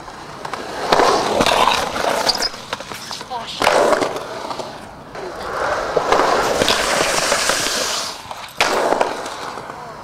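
Skateboard wheels rolling over concrete, the rolling noise swelling and fading as the board rides the park's banks. Two sharp knocks cut in, a little over a third of the way in and again near the end.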